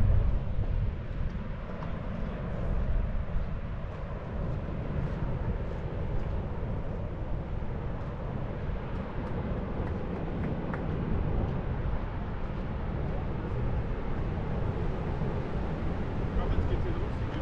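Wind buffeting a small action-camera microphone: a steady, unevenly fluttering low rumble with a fainter hiss above it.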